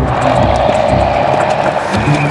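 A tank's engine running and its tracks clattering steadily as it pushes through brush, with background music underneath.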